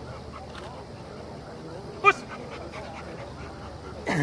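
A single short, sharp dog bark about two seconds in, over a faint murmur of distant voices.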